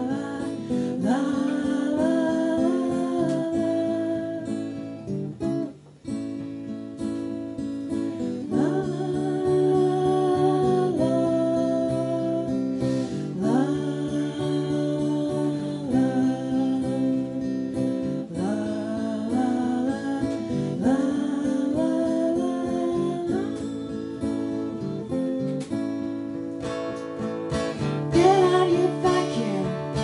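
Steel-string acoustic guitar strummed as song accompaniment, with a woman's singing voice over it and a short break about six seconds in.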